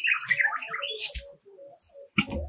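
Birds chirping in short, scattered calls that fade out after about a second and a half, with a brief low thud about a second in.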